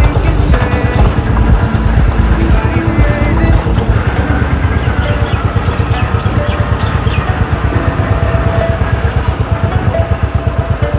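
Motorcycle engine running at low road speed, its exhaust beat making a regular pulse that is clearest in the second half, heard under background music.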